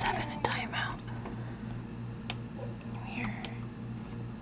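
A voice in the first second, whispering or murmuring, then a short high call about three seconds in. A few sharp clicks, and a steady pulsing hum underneath.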